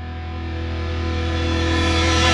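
Music: a distorted electric guitar chord held and growing louder, the rock guitar sting that leads into the show's intro.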